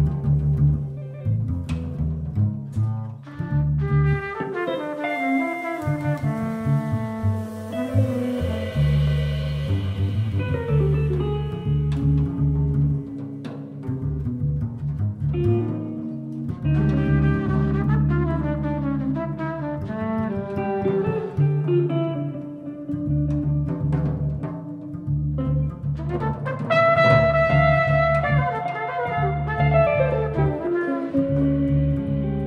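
Live jazz band playing an instrumental jam: a deep bass line under moving melodic lines, with a long held note near the end.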